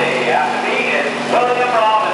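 A small garden tractor engine running steadily under the indistinct, overlapping voices of onlookers.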